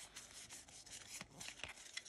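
Faint rubbing of Pokémon trading cards sliding over one another in the hand as they are moved through the stack, with a few light clicks of card edges.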